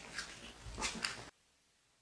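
A few faint, brief rustling noises as a person steps away from a whiteboard, then the sound cuts off abruptly to dead silence just over a second in.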